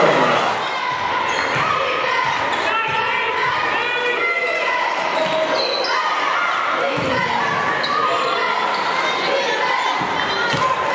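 Basketball game sounds in a large, echoing gym: players and spectators calling out over one another, with a ball bouncing on the hardwood floor now and then.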